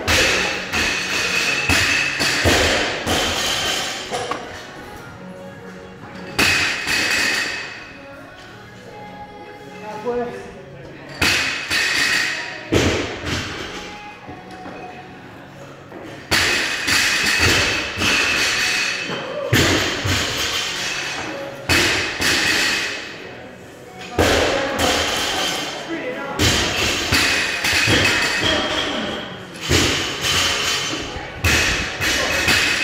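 Barbell loaded with rubber bumper plates dropped repeatedly onto a rubber gym floor, a heavy thud every few seconds.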